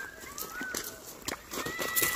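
A woven takraw ball kicked once, a short sharp thump about a second and a quarter in, with two thin whistled bird calls around it, the first rising, the second held level and falling away at its end.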